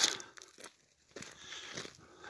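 Faint, scattered crunching and rustling with a few soft clicks, a little more continuous in the second half.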